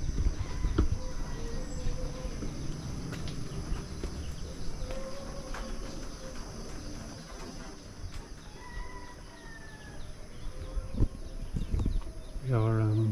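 Steady high-pitched insect chorus of cicadas and crickets, with a few short animal calls now and then and a low rumble that is strongest at the start.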